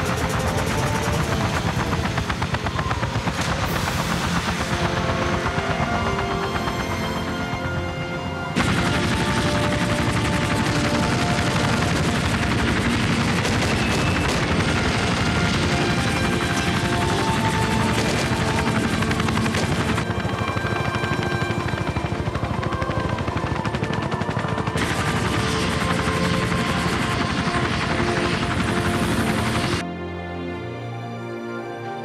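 Film soundtrack of a UH-1 Huey-type helicopter's rotor chop and rapid automatic gunfire, mixed with score music; the level dips and then jumps back up sharply about eight and a half seconds in.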